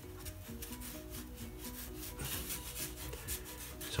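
Felt-tip permanent marker scratching across watercolour paper in quick short strokes, busiest around the middle. Soft background music plays underneath.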